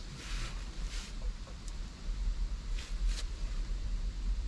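Sticks being gathered from a woodpile over fallen leaves: a few brief rustling scrapes, about three in four seconds, over a steady low rumble.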